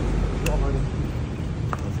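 A single sharp click about half a second in as the motorcycle's ignition key switch is turned on, over a low rumble that eases off after about a second.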